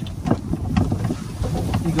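Footsteps crunching and rustling through dry grass, a few short crackles a second, over a steady low wind rumble on the microphone.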